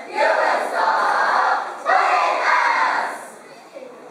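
A school choral speaking team of boys and girls calling out two lines together in unison. The voices drop off about three seconds in.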